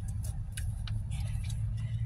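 Skeins of yarn handled in a cardboard box: a few light clicks and a soft rustle, over a steady low hum.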